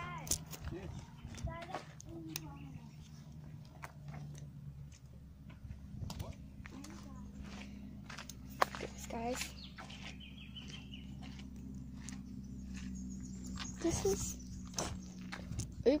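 Faint, indistinct voices with scattered knocks and rustles from handling a hand-held phone, over a steady low hum.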